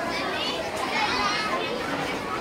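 Many young children's voices chattering and calling out at once, a steady, overlapping babble with no single clear voice.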